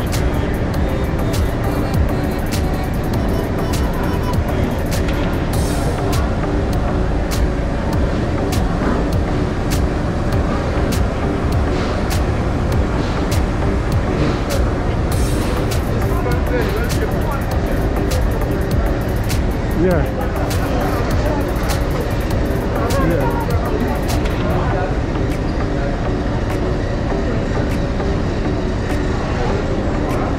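Busy store ambience: music playing with people's chatter, over a steady low rumble and frequent short clicks.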